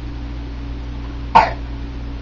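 A single short cough a little over a second in.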